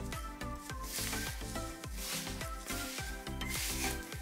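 Gloved hands rubbing and working dry bath bomb powder of baking soda and citric acid in a bowl, in two noisy stretches, about a second in and again around three seconds. Background music with a steady beat plays throughout.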